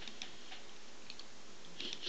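A pause between a man's sentences over a video call: steady background hiss with a few faint, irregular soft clicks, and a short faint sound near the end.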